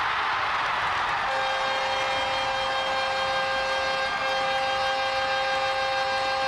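Arena crowd cheering a goal, then about a second in a steady, loud goal horn starts sounding over the cheers and holds on.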